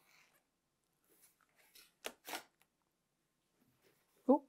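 Near silence, with a few faint brief strokes about two seconds in: a pen marking diagonal lines on the back of fabric squares along an acrylic quilting ruler.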